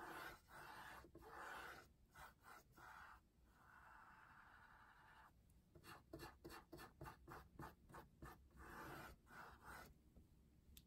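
Faint scratchy swishes of a large paintbrush spreading paint across a stretched canvas, a long stroke about four seconds in followed by a run of quicker short strokes.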